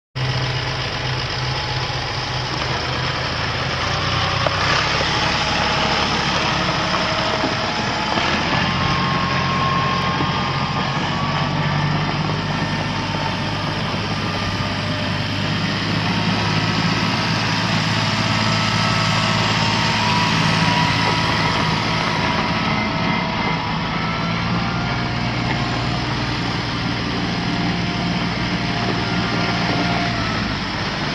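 2018 Massey Ferguson 1736 compact diesel tractor running as it is driven across gravel. The engine note shifts a couple of times in the first ten seconds, then holds steady.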